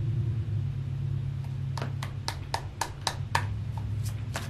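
Tarot cards being shuffled by hand: a run of short sharp clicks, about three or four a second, starting a second and a half in. A steady low hum runs underneath.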